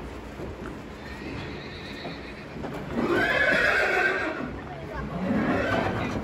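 A horse whinnying: one loud, wavering call about three seconds in, and a second, lower call near the end.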